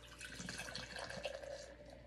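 Beer poured from a can into a ceramic stein, the liquid splashing and the foaming head fizzing as it rises toward the rim.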